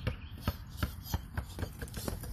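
A child's footsteps running on a concrete driveway: a run of quick sharp knocks, about four a second, coming closer together as she speeds up.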